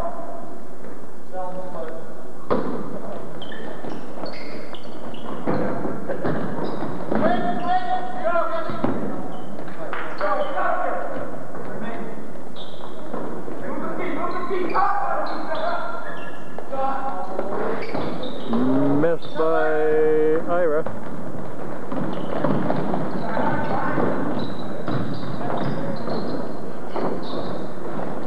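Gym noise during a basketball game: unclear voices and calls from the crowd and players, with the ball bouncing and thudding on the hardwood court. One loud drawn-out call comes about twenty seconds in.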